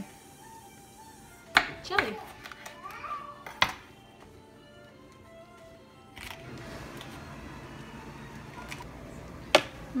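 A few sharp knocks of a kitchen knife on a plastic cutting board while jalapeños are seeded, with a child's voice in the background. A low steady noise comes in about six seconds in.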